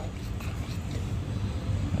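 A steady low rumble with no distinct events, about even throughout.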